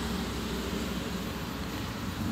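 Steady background noise, a low rumble with a hiss over it and no distinct events.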